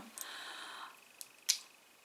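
A faint hiss, then a small tick and a sharp click about a second and a half in, as the black cap is pulled off a YSL Libre perfume bottle.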